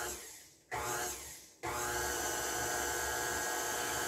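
Electric stand mixer beating cake batter. The motor runs down to a stop, is pulsed on briefly about a second in, then is switched on again and runs steadily. The short first pulse keeps the batter from splashing out of the bowl before the mixer is left running.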